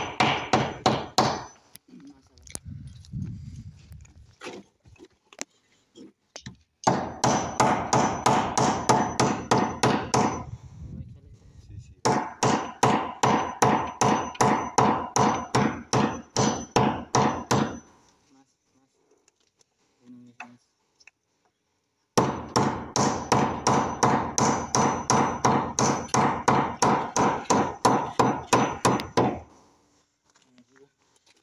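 Hammer blows on a wooden window frame as it is fixed in place: fast runs of ringing strikes, about five a second, with short pauses between the runs.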